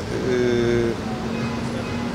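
A man's drawn-out hesitation sound "eee" at one steady pitch, held for most of a second as he searches for his answer, then fading into a low hum. Steady city traffic noise runs underneath.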